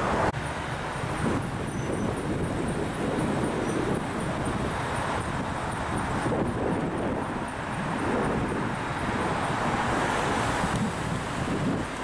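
Outdoor street ambience: steady traffic noise with wind buffeting the microphone.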